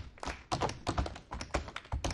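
Tap shoes striking the floor in a quick, uneven rhythm, about five sharp taps a second, many with a low thud under them. There is a short lull just after the start.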